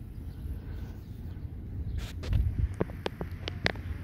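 Wind buffeting the microphone, a fluctuating low rumble, with a handful of short sharp clicks in the last two seconds.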